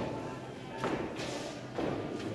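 A line of men stamping their feet in unison on a hard tiled floor: three heavy thuds a little under a second apart, with group voices singing beneath.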